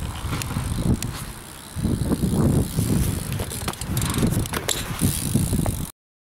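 BMX bike tyres rolling on skatepark concrete: an uneven low rumble with scattered clicks and knocks from the bike. It eases off briefly about a second and a half in, swells again, and cuts off suddenly near the end.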